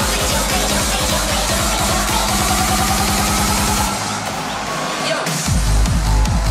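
Hardstyle dance music played loud over a festival sound system. A rapid drum roll builds up, the bass cuts out for about a second and a half while a rising sweep plays, and then a heavy kick drum drops back in just before the end.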